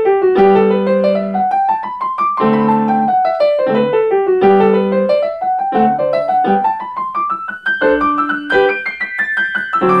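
Grand piano played solo: quick runs of notes sweeping down and back up over held chords in the low register, repeating every couple of seconds.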